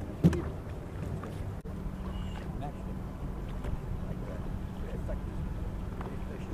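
Steady low drone of a fishing boat's motor running, with one sharp knock a fraction of a second in.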